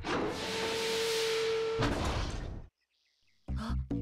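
Cartoon transition sound effect: a loud rush of noise with one held tone, cutting off suddenly, then a short silence before background music with a regular beat comes in near the end.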